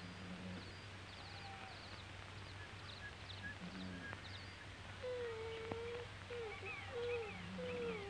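Faint, short bird chirps over the steady hum and hiss of an old film soundtrack; from about five seconds in, a low wavering tone is held, breaks off and comes back.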